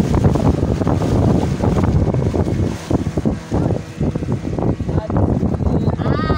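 Wind buffeting the microphone over the rush of a small open boat moving across choppy lake water, loud and gusting unevenly.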